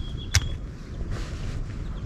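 A single sharp click of the camera being handled while a right-angle viewfinder is fitted to it. Under it, a long, thin, steady whistled note of a white-throated sparrow ends shortly after the click, over a low outdoor rumble.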